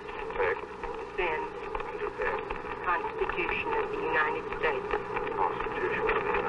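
Voices reciting the presidential oath of office on an old, hissy, muffled recording.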